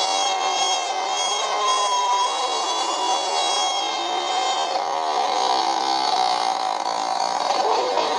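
Cartoon soundtrack played from a screen: high held tones with a wavering pitch for the first few seconds, then lower tones sliding down about four to five seconds in.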